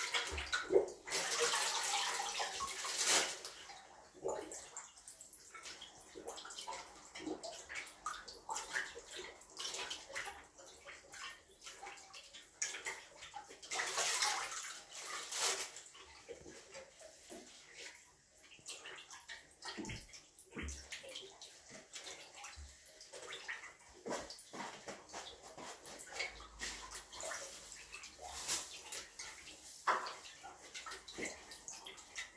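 Water sloshing and splashing in a clogged toilet bowl as it is pumped by hand to clear the blockage. It comes in irregular strokes, with louder spells of splashing near the start and about halfway through.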